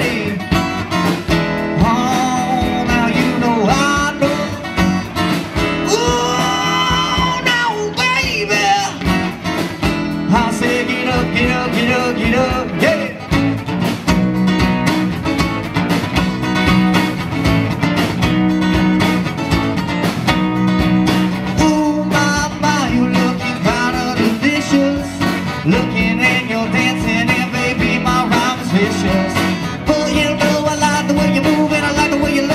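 Live band playing an original song on two acoustic guitars, electric bass and drums, with a man's sung vocal, most prominent in the first several seconds.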